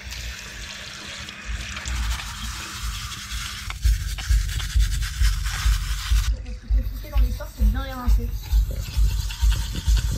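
Brushing and scrubbing with a small hand brush in a washbasin: a dense hiss that stops suddenly about six seconds in. Background music with a steady beat comes in about four seconds in.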